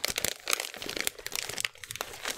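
Paper and packaging being handled on a craft table, rustling and crinkling in a run of quick, irregular crackles and taps.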